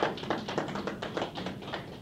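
A quick run of sharp claps, about ten a second, strongest at the start and thinning out toward the end: a few listeners in the audience clapping briefly.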